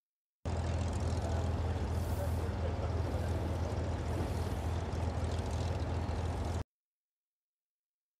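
Outdoor crowd ambience: people talking over a steady low rumble. It starts about half a second in and cuts off suddenly near the end.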